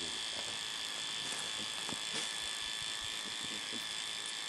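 Electric tattoo pen buzzing steadily with an even high whine as it tattoos an identification number inside a black bear's lip.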